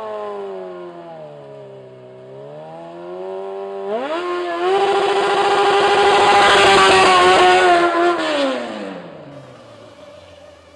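Honda CBR900RR inline-four engine revving during a stunt with the rear tyre spinning on wet asphalt. The revs sag, jump sharply about four seconds in and hold high for about four seconds with a hiss of tyre and spray, then die away near the end.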